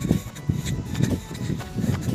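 Low thuds and wind rumble on a handheld phone's microphone while someone jogs, with faint music underneath.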